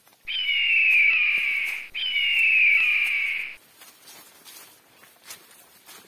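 Two loud, long calls from an animal up in the forest canopy, back to back and each about a second and a half long, with a slight fall in pitch inside each call; soft rustles and steps on leaf litter follow.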